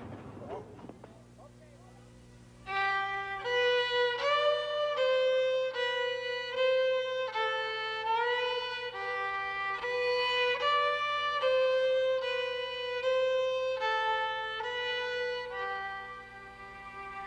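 Background music: a slow, sustained violin melody with slides between notes, entering about three seconds in after a quiet stretch.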